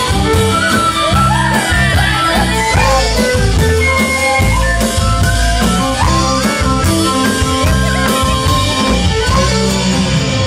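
A live folk band playing an instrumental break between verses: strummed guitar, upright bass and drums under a wavering lead melody that carries the tune, played loud and unbroken.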